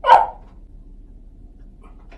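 A single short bark from a dog right at the start, then only faint background noise.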